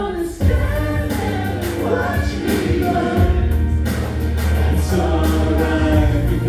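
Karaoke backing track of a pop-rap ballad with a heavy bass line coming in sharply about half a second in, and several voices singing the hook over it through a PA.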